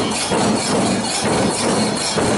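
A crowd of mourners beating their chests (matam) in a steady rhythm, about two to three beats a second, over the noise of crowd voices.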